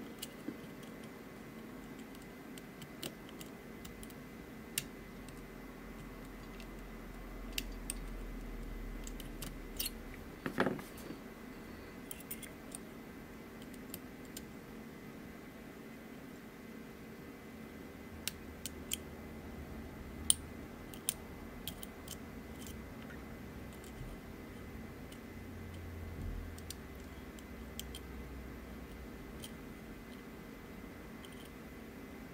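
A dimple lock pick working the pin-in-pin stacks of a Kenaurd Mul-T-Lock-style mortise cylinder under tension, giving faint, scattered metallic clicks and small scrapes. One louder cluster of clicks comes about ten seconds in.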